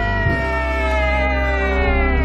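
A person's long high-pitched scream of delight at a correct quiz answer, held and slowly falling in pitch until it fades near the end, over music with a steady deep bass.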